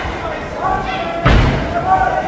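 A heavy thud about a second in and a lighter one just before the end, over shouting voices in a large hall.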